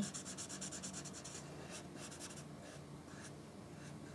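Red felt-tip permanent marker scribbling back and forth on paper, shading in a Venn diagram. A fast run of short, faint strokes for about the first second and a half, then fewer, slower strokes.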